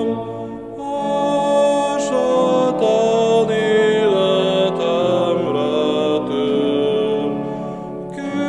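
A man singing a slow Reformed hymn in Hungarian, one held note after another, over sustained accompanying chords that change about once a second.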